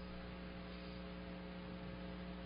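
Steady electrical mains hum with a faint hiss on the sermon recording, a low constant buzz made of several steady tones.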